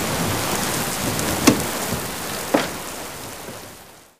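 Steady rain falling, with two sharp clicks about one and a half and two and a half seconds in, fading out toward the end.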